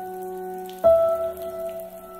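Slow, calm instrumental music: a single piano note struck about a second in, ringing on over a held lower tone, with a soft water sound underneath.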